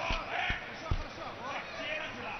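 Three dull thumps on the wrestling mat, about half a second apart, as two wrestlers grapple, with shouting voices from the arena crowd.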